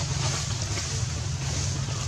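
Steady outdoor background noise: a low rumble with a broad hiss over it, with no distinct events.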